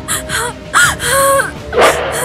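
Film soundtrack: background music with breathy gasps and short moaning vocal sounds.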